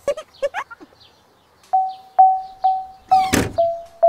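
A cartoon child's short giggle. Then a background music cue of one plucked note repeated evenly about twice a second. About three and a half seconds in, a loud whoosh with a thump marks the scene transition.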